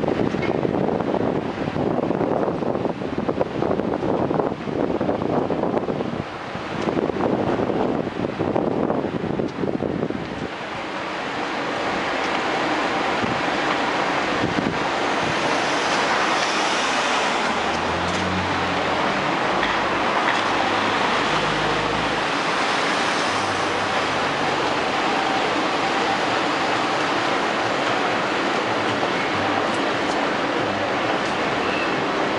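Outdoor street noise with wind buffeting the camera microphone in gusts, settling about ten seconds in into a steady rushing hiss. A low hum comes and goes a little past the middle.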